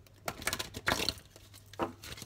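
A deck of oracle cards being shuffled by hand: a quick run of papery riffling and flicking strokes in the first second or so, with a short extra sound near the end.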